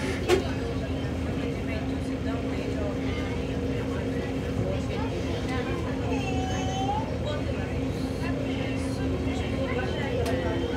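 Inside a city bus standing still in traffic: a steady low rumble with a constant hum from the idling bus, and a single sharp knock just after the start.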